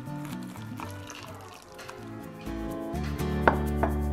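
Background music, with a low steady hum coming in about three seconds in. Two short taps of a wooden spoon against a glass mug follow near the end as a cocoa drink is stirred.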